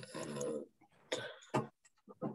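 A man coughing: a long noisy burst, then a shorter one about a second in, followed by a brief spoken "uh".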